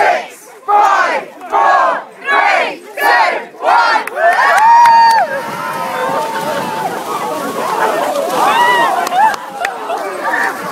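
A crowd chanting a countdown in unison, one number about every two-thirds of a second. About four seconds in it breaks into a loud cheer and screaming, and the shouting and screams carry on as people rush into the cold lake water.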